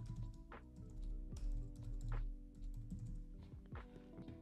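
Computer keyboard keys clicking in irregular, scattered keystrokes as text is typed, fairly faint.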